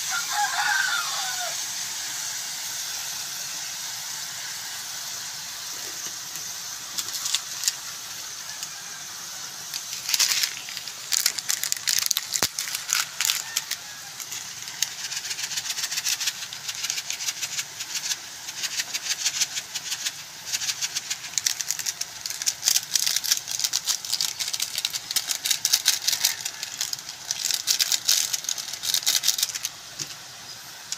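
Catfish adobo simmering in its soy-vinegar sauce in a wok: a steady sizzling hiss, with dense crackling and popping from about seven seconds in.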